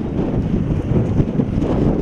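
Strong wind buffeting the microphone outdoors, a steady rough rushing noise heaviest in the low end.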